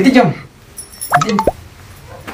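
Short bits of spoken voice, with a brief sharp pop about a second and a half in.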